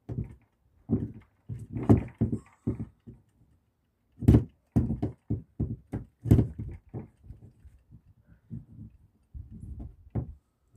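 Camper-van hinged window frame knocking and clacking as it is worked into its hinge rail: a run of irregular thuds and sharp knocks, loudest about two, four and six seconds in, trailing off into lighter taps.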